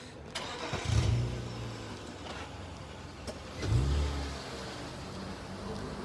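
Car engines in street traffic: two short low engine surges as cars pull away, about a second in and again just before four seconds, then a steady engine hum that builds near the end as another car comes closer.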